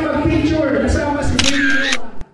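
Background music with a steady beat plays, then a camera-shutter click sound effect comes about one and a half seconds in.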